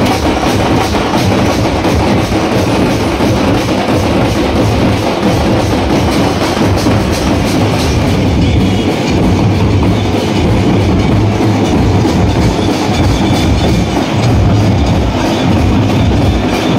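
A street drum band beating large stick-played drums, with a cymbal, in a loud, fast, unbroken rhythm.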